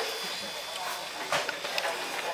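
A short laugh, then low restaurant room noise with faint background voices and a couple of soft clicks.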